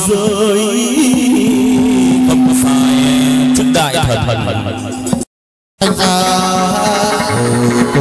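Chầu văn ritual music from a live ensemble with a moon lute, its melody lines wavering with heavy vibrato and one note held for about three seconds. A little after five seconds in, the sound cuts out completely for about half a second, then the music resumes.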